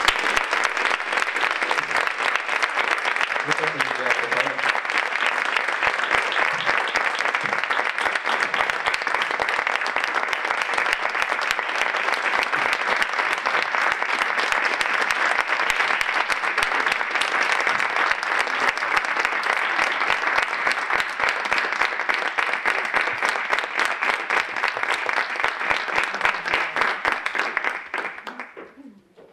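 Audience applauding: dense, steady clapping for the whole stretch, falling away sharply at the very end.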